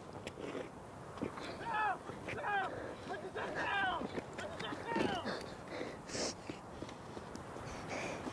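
Indistinct, wordless human voices: several short calls that fall in pitch, between about two and five seconds in, with scattered light knocks around them.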